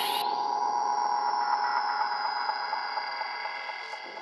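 Breakdown of an electronic techno track with the kick and bass gone. A rising synth sweep levels off into a high held tone that slowly drifts down over a sustained synth chord, with short repeating synth notes underneath, all fading toward the end.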